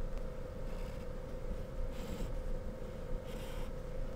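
Pencil drawing straight lines on paper: faint scratching in a few short strokes, over a faint steady hum.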